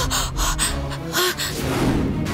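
A woman gasping sharply several times, short breathy cries, over a low steady music drone.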